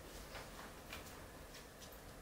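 Quiet room with four faint, short clicks spread irregularly through it.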